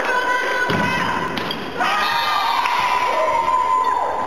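Volleyball rally in a sports hall: the ball is struck with dull thuds, about one and two seconds in, then voices shout and cheer as the point ends, over a long held high tone.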